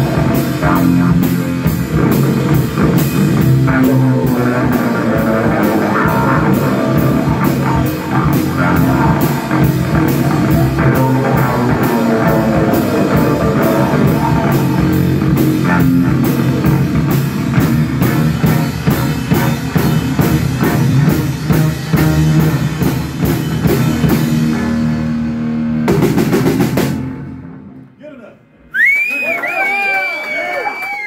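Live rock played on electric bass guitar and drum kit, with steady cymbal and drum hits over a heavy bass line. The song ends with a final loud hit about 26 seconds in, and near the end a high, wavering whistle rises.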